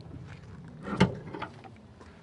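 Swing-away spare tire carrier on a 1971 Ford Bronco being swung open on its hinge, with one sharp clunk about a second in and faint handling noise around it.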